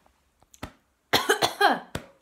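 A woman coughing: a quick run of coughs starting about a second in and lasting under a second. A sharp click comes shortly before the coughs and another right at the end.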